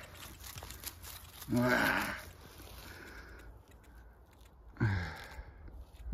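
A man's voice twice, briefly, about one and a half seconds in and again near five seconds, with faint rustling and crunching of dry leaf litter between as a roe deer skull with antlers is handled.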